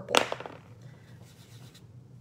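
Soft pastel chalk being rubbed into card stock with a cotton ball: a brief scratchy rub just after the start, then faint rubbing.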